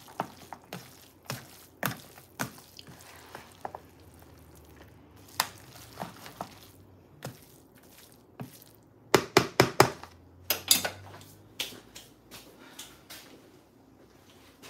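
A spoon stirring a thick casserole mixture in a plastic bowl, knocking and scraping against the bowl in scattered clicks, with a quick run of knocks about nine to eleven seconds in.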